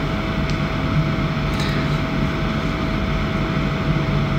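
Steady mechanical hum and hiss of room machinery, with a thin, even tone held above it.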